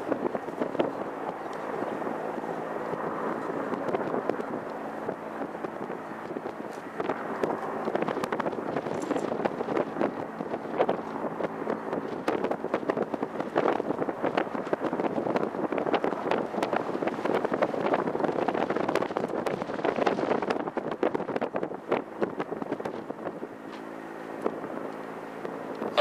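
Mitsubishi Regional Jet taxiing, its two Pratt & Whitney PW1200G turbofans heard from a distance as a steady rushing noise with an irregular crackle.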